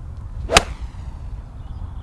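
A golf club striking a ball on a full swing: one sharp crack about half a second in, with a short ringing tail. It is a well-struck shot.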